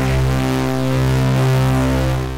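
UVI Synth Anthology 4 synth patch layering the Colossus 'ASC Saw 2' and Virus C 'Ultra Funky' sounds, pushed through Falcon's Analog Crunch distortion. It holds one steady low note, rich in overtones, with a rumbling low end and serious crunch.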